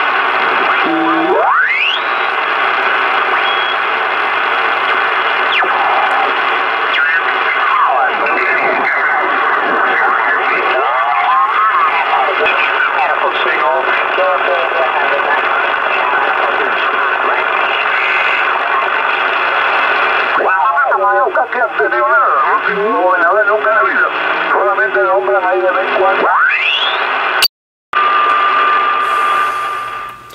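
Collins KWM-1 transceiver's receiver being tuned across a ham band: steady band hiss, whistles that sweep up in pitch as the dial passes stations, and garbled, warbling voices of stations drifting in and out of tune. Near the end it cuts out for a moment, then a steady whistle tone is heard. The receiver is working well.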